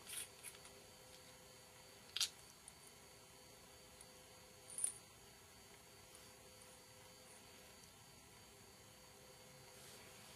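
A few faint clicks and taps from handling a lavalier microphone's small battery housing as its cap is unscrewed, with long quiet gaps between; the sharpest click comes about two seconds in and a brief high tick about five seconds in.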